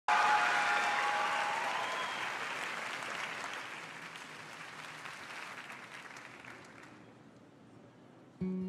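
Theatre audience applauding, starting suddenly and dying away steadily over several seconds.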